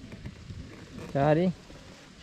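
A person speaking one short word about a second in, over faint outdoor background noise.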